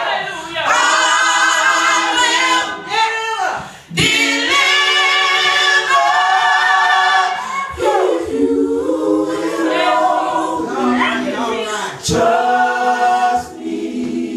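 A small group of women singing a gospel song together without instruments, in long held phrases with short breaks for breath about every four seconds.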